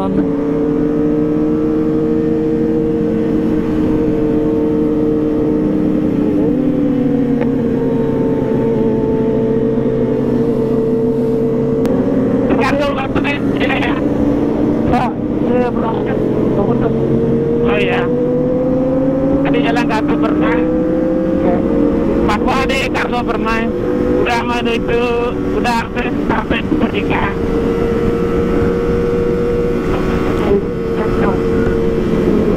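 Kawasaki ZX-25R 250 cc inline-four engine heard from the rider's seat, running at a steady cruise, its note drifting gently up and down in pitch with small throttle changes.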